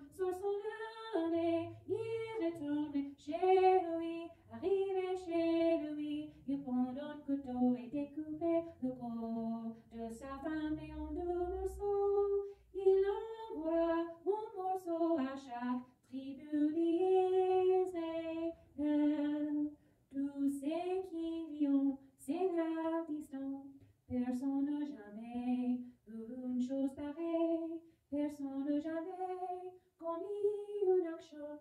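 A woman singing in French, unaccompanied, in short melodic phrases with brief pauses for breath between them.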